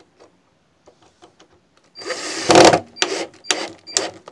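Cordless drill driving a screw into a wooden slat: one run of nearly a second about halfway through, then three short bursts as the screw goes home.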